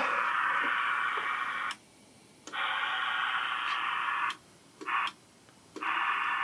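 Receive static hiss from a President Grant SSB CB radio's speaker, set to lower sideband. The hiss cuts off abruptly twice as the mic is keyed for dead-key transmit tests, with a faint click at the switches and a short burst of hiss between the later gaps.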